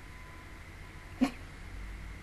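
A single short, sharp vocal burst, a stifled snort or laugh muffled by a hand over the mouth, a little past a second in, over quiet room tone.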